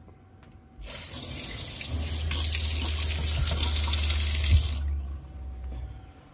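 Water from a kitchen faucet running into a deep stainless steel sink, splashing on the metal basin for about four seconds before it is shut off. A low steady hum comes in about two seconds in and stops about a second after the water.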